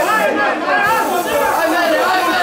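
Several people talking at once, their voices overlapping into continuous chatter.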